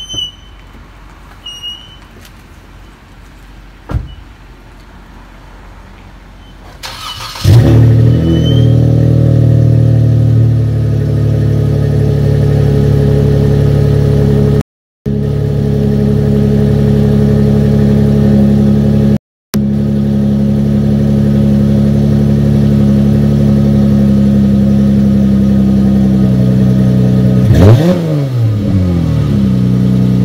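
Car engine cold-started: after a quiet stretch it cranks briefly about seven seconds in, catches and settles into a loud, steady idle. Near the end it is revved a couple of times, the pitch sweeping up and back down.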